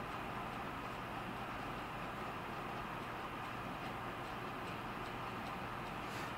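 Room tone: a steady low hum and faint hiss, with faint regular ticking.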